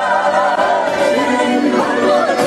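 A group of voices singing a song together, with long, wavering held notes.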